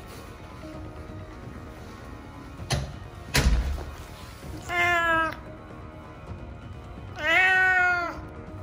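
An old cat meowing twice from inside a soft-sided pet carrier, complaining at being shut in it: one call about halfway through and a longer one near the end, each drawn out with a rise and fall in pitch. Two sharp knocks come a little before the meows.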